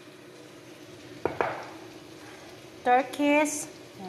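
A metal spoon knocks once against a glass spice jar about a second in, over steady frying from the pot on the stove. Near the end comes a brief sound of a voice.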